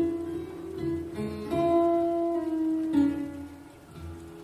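Solo acoustic guitar, fingerpicked: a few single notes and short chords struck and left to ring and fade, growing quieter near the end.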